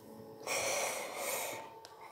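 A person's breathy exhale, like a sigh, lasting about a second and starting about half a second in.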